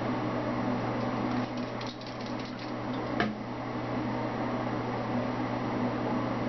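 Steady mechanical hum with hiss, like a running fan in a small room. A quick run of light clicks comes about one and a half seconds in, and one sharper click follows just after three seconds.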